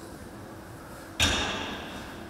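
Seated cable row machine in use over steady room noise. A little over a second in comes a sudden clattering sound from the weight stack and cable that dies away over most of a second.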